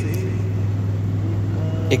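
A steady low hum, with a faint voice underneath.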